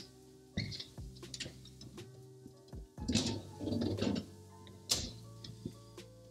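Soft background music, with a few sharp knocks and clinks, the brightest about five seconds in, and a louder rough stretch of handling noise about three seconds in.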